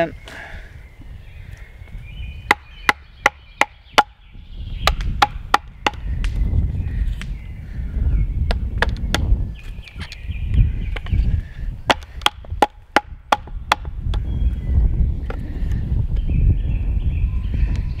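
Wooden baton striking the spine of a belt knife to drive it down through a sweet chestnut section, splitting wood off to a stop cut. Sharp wooden knocks come in several quick runs of three to five blows.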